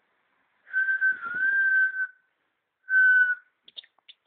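A person whistling two steady notes at one pitch: a long one of about a second and a half with a slight dip in the middle, then a short one. A few faint clicks follow near the end.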